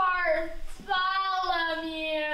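A child's voice sounding two long, drawn-out, sung-like notes. The second note starts about a second in and is held, falling gently in pitch.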